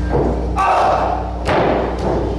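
Impacts in a wrestling ring: a loud noisy burst about half a second in, then a sharp slap-like thud about a second and a half in, as the wrestlers strike each other or hit the canvas. A steady low electrical hum runs underneath.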